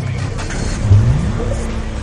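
The show's title sting: a low, steady musical bed with a sudden loud low hit about a second in, followed by a sound effect that rises in pitch like an engine revving up.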